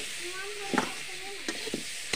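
Potatoes and spice masala frying in oil in a metal kadhai, sizzling steadily, while a metal spatula stirs them and scrapes and clinks against the pan a few times. This is the masala being fried through before water goes in.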